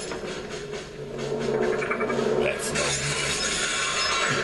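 Film soundtrack sound effects: mechanical clicking and ratcheting over a steady low hum, with a brief sweep about two-thirds of the way in.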